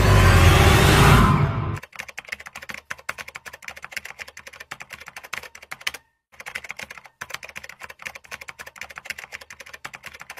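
Music that cuts off abruptly about two seconds in, then rapid computer-keyboard typing, a steady run of quick key clicks with two short pauses, matched to text being typed out on screen.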